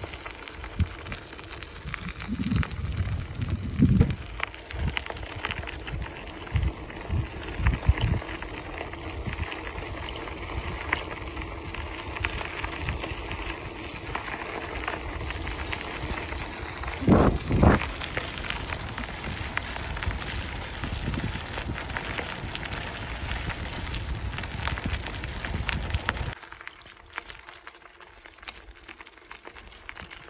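Folding-bike tyres crunching and crackling over a gravel track, with irregular low thumps of wind and bumps on the microphone and two short squeaks about two thirds of the way through. Near the end the sound drops suddenly to a quieter, softer rolling.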